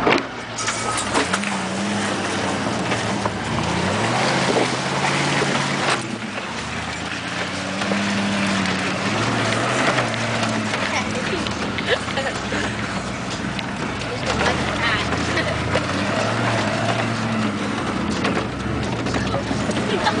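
A 4x4 truck's engine revving up and down as it drives through mud, with mud and water splashing over the windshield and body.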